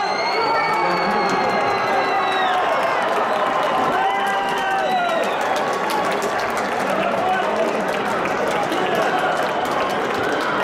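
Shouting and cheering from players and a small stadium crowd as a goal is scored. A long, held yell rises over it in the first couple of seconds, then scattered overlapping shouts carry on.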